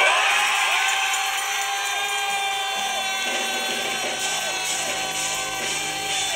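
Live church band music with a sustained electric guitar, held tones with repeated bends over a steady backing.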